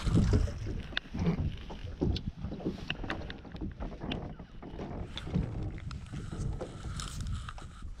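Wind rumbling on the microphone in an open boat, with scattered knocks and rustles as a person moves about the fibreglass deck handling a fishing rod.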